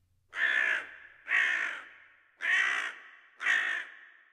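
A crow cawing four times, each harsh caw about half a second long and about a second apart, the last one trailing off in an echo.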